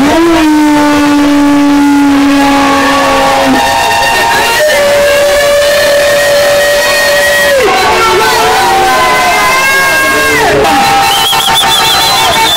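A crowd celebrating with long, drawn-out held calls at several pitches, some falling away at the end, and a fast trilling ululation near the end.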